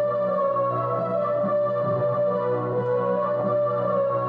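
Casio electronic keyboard played as an instrumental passage of sustained chords.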